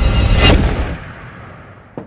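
A low, droning trailer music bed ends in one loud cinematic boom about half a second in. Its echoing tail dies away over the next second and a half.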